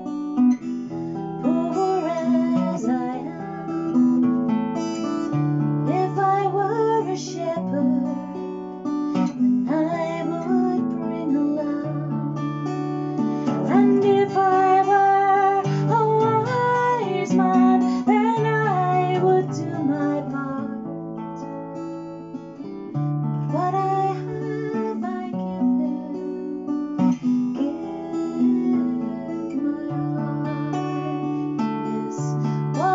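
A woman singing while strumming chords on an acoustic guitar.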